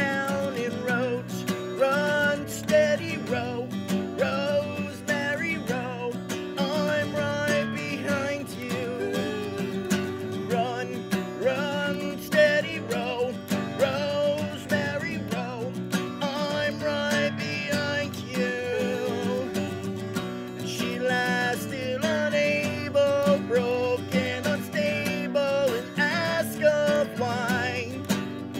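Acoustic guitar music: strummed chords under a bending melodic lead line, an instrumental passage of a folk-country song.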